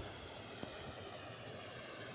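Faint, steady outdoor background noise: an even low hiss with no distinct events.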